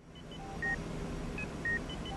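Short electronic beeps at several different pitches, some in quick pairs, over a low steady background rumble that fades in at the start.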